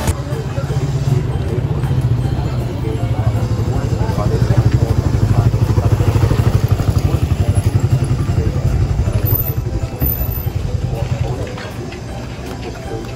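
Small motorcycle engine running close by as it rides slowly past, getting louder a few seconds in and fading near the end.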